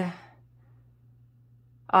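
A pause in speech: a voice trails off at the start, then faint room tone with a low steady hum, then a hesitant "uh" at the very end.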